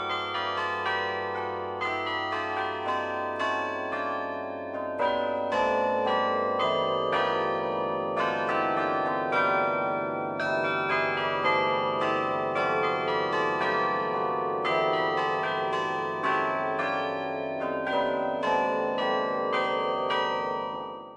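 Carillon bells playing a melody, quick struck notes ringing on over one another.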